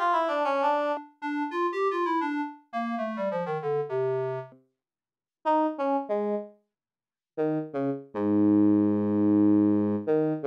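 MRB Tiny Voice software synthesizer (a two-oscillator subtractive synth voice) playing its oboe-imitating preset in a melodic phrase that steps downward. Then, after short pauses, its bassoon-imitating preset plays lower notes, ending on a long held low note.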